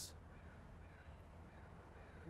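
Near silence: faint outdoor background with a few faint bird calls.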